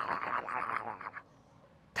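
A raspy, hissing growl imitating a gremlin, lasting about a second and stopping abruptly.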